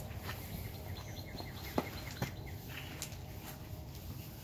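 A bird chirping faintly in a quick series, with two sharp clicks near the middle, over a low steady outdoor rumble.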